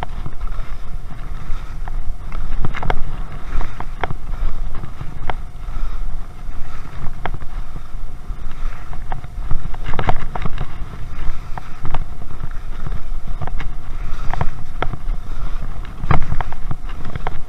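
K2 Rictor skis sliding down a snow slope at speed, heard through a body-mounted camera: a steady rumble of wind on the microphone with frequent sharp scrapes and knocks as the skis run over the snow.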